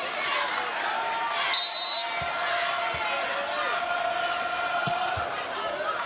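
Arena crowd noise, many voices calling and chattering at once, with a volleyball bounced on the court floor a few times before a serve. A short high tone comes near the two-second mark.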